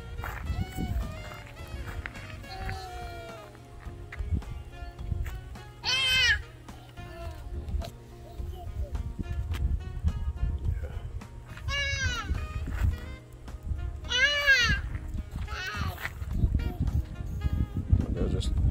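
High-pitched voices calling out four times, short rising-and-falling cries, over a steady low rumble.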